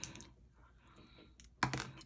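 A single die rolled on a tabletop: a few light clicks as it tumbles and settles, with near quiet between them.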